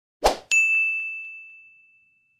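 Sound effects for an animated 'like' button: a short noisy swish, then a bright single ding that rings out and fades over about a second and a half.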